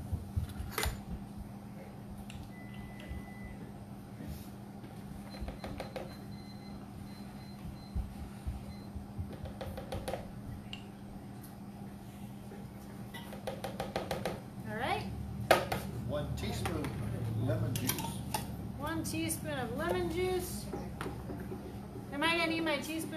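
A spoon clinking and tapping against a jar and a metal pot as cornstarch is measured out, a few sharp taps scattered through and the loudest about three-quarters of the way in, over a steady low hum. Voices talk quietly in the last several seconds.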